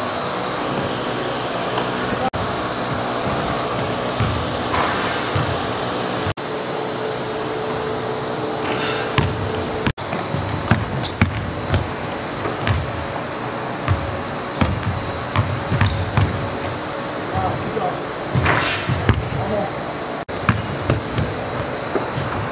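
A basketball bouncing on a hardwood gym floor during shooting drills, a string of irregular knocks from dribbles and landings that gets busier about halfway through. The sound drops out briefly a few times where the clips are cut.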